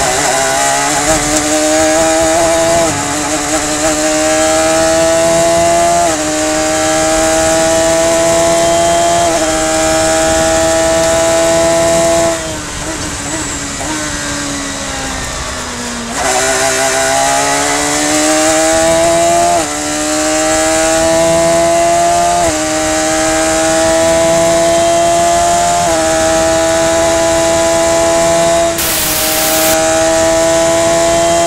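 Radical SR3 race car's high-revving engine heard from the cockpit under full throttle, rising in pitch and dropping a step at each quick sequential upshift. About twelve seconds in it falls away as the car lifts and brakes for a corner. It then pulls hard again through several more upshifts down the straight.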